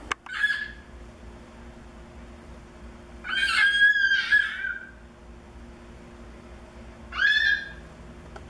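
A chicken squawking three times: a short call just after the start, a longer two-part call in the middle, and another short call near the end.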